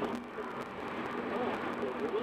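Steady road and tyre noise inside a car cabin at highway speed, with a low hum.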